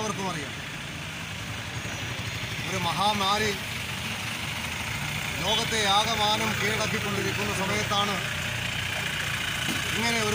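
An engine idling steadily, a low hum running under short stretches of a man's speech.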